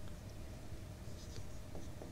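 Marker pen writing on a whiteboard: faint strokes, clearest about a second in, over low room hiss.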